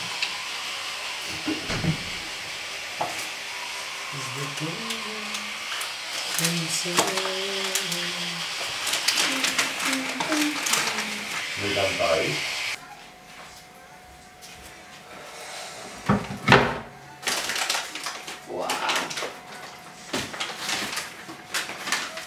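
Clicks and knocks of items being handled at an open fridge and kitchen shelves, under low voices and a steady hiss. The hiss cuts off suddenly about halfway through, leaving scattered knocks, one of them sharp and loud, and a short exclamation of surprise.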